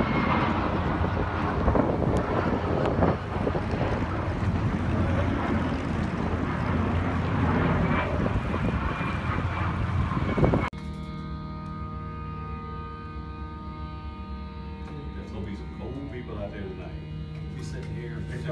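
Fighter jet flying overhead: a loud, steady rush of jet noise with a faint high whine. It cuts off abruptly about ten seconds in, and background music with sustained notes follows.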